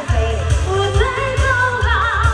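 A woman singing a pop song into a hand microphone over an amplified backing track with a heavy bass beat, about two beats a second.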